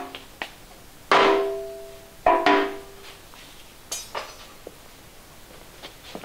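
Cardboard boards being set down and knocked against a hollow plastic utility cart tray, each knock ringing briefly. A loud knock comes about a second in and two more close together just past two seconds, then a short scrape and fainter taps.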